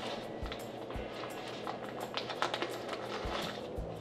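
Soft background music with steady low notes. About two seconds in there is a short crinkling of a plastic bag as a spoon scoops powdered mortar mix from it.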